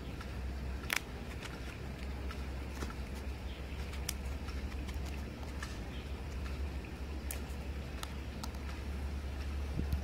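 Dried eggplant slices cracking and snapping in short, sharp, separate cracks as they are bent and broken between the fingers, very crispy: the slices are dried through. A steady low hum runs underneath.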